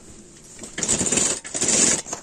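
A Prime domestic sewing machine running, stitching a seam in cotton fabric. A rapid run of needle strokes starts about three-quarters of a second in, with a brief dip partway through.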